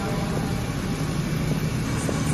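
Steady low mechanical hum over an even background rumble, with a few faint ticks.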